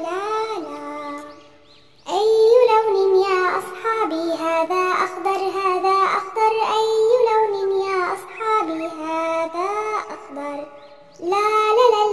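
Children's song: a child's voice singing a melody over backing music. The singing fades out about a second in and comes back at two seconds, with another short break near the end.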